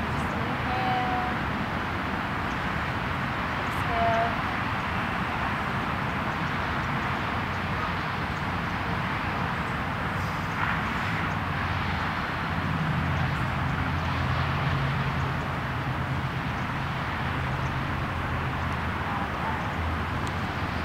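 Steady hiss of distant road traffic, with a low engine drone that swells about twelve seconds in and fades a few seconds later.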